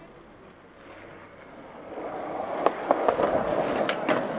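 Skateboard wheels rolling on street pavement, growing louder from about a second in, with a few sharp clicks in the second half.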